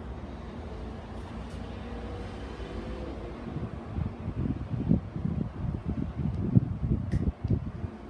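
Steady low background hum. From about halfway through comes a run of irregular soft low thumps and knocks, handling noise close to the microphone.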